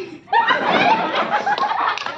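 Music stops abruptly, the cue in musical chairs to grab a seat. After a brief pause, a group of women burst out laughing and calling out together.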